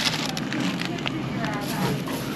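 Shop room noise: a steady low hum with faint voices and a few light rustles and clicks, the loudest rustle right at the start.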